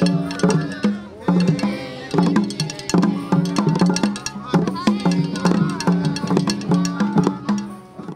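A group of children beating handmade hide hand drums with sticks in a steady, even beat while singing a song together.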